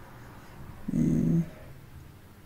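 A short, low vocal sound about a second in, lasting about half a second.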